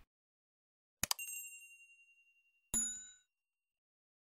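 Two user-interface sound effects: a click and a long ringing ding about a second in, then a second click with a brighter, shorter bell chime just before three seconds. These are the animated clicks on the Subscribe button and the notification bell.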